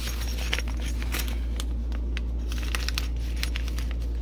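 Small clicks and rattles of brass fittings and tools being moved about in a plastic toolbox, with plastic bags crinkling, over a steady low hum.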